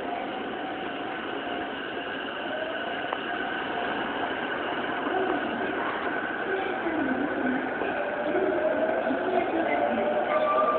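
Electric commuter train running on the elevated tracks at a station, with a faint whine that glides in pitch over a steady rumble, growing louder in the second half.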